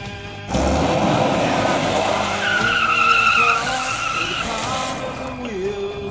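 Honda Accord skidding across a dry grass field: a loud rush of tyre and dirt noise starts suddenly about half a second in, with a high tyre squeal through the middle, over a music track.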